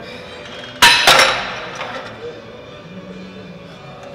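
Cable row machine's steel weight stack dropping back down and clanking, two strikes in quick succession about a second in, with metallic ringing that dies away over about a second.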